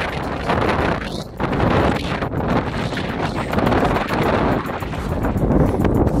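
Strong wind buffeting the camera microphone in loud, gusting rumbles.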